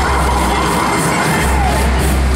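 Loud music with a heavy bass from a Break Dance fairground ride's sound system, with riders shouting and cheering over it.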